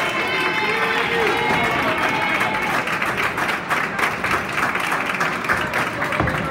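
Crowd noise in a busy bowling alley: overlapping voices with clapping and many short knocks and clicks.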